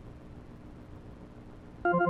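Arturia B-3 V software tonewheel organ on its 'Fake Leslie' preset: a quiet low hum and hiss between notes, then a short, loud chord struck near the end.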